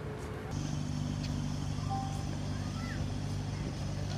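Steady low engine hum of a boat on the water, starting abruptly about half a second in and holding an even pitch. Before it there is faint outdoor ambience.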